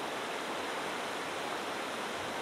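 Shallow rocky stream flowing over stones: a steady, even rush of water.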